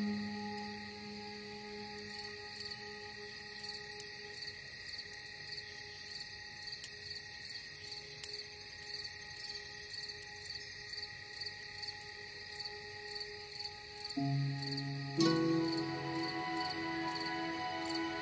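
Slow ambient music of long held notes over a steady, evenly pulsing chirping of crickets. The music thins to a few quiet sustained tones, then fuller, louder notes come back in about fourteen seconds in.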